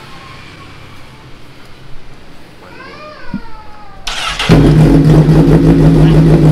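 Honda CBR1000RR SP's inline-four engine with an SC-Project aftermarket exhaust being started: a brief crank about four seconds in, catching within half a second and then idling loud and steady.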